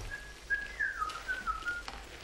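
A man whistling a short tune: a handful of clear notes that step up and then fall.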